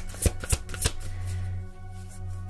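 A tarot deck being shuffled by hand, a few quick sharp card flicks in the first second that then die away, over soft steady background music.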